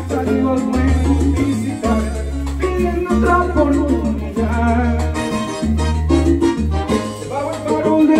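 Salsa music playing loudly as a karaoke track, with a man singing along into a microphone.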